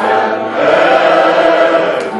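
Live Turkish song with flute and oud accompanying several voices singing together.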